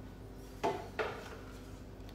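A metal spoon clinking twice against a glass jar while scooping out a thick dressing, two sharp knocks about half a second apart with a brief ring.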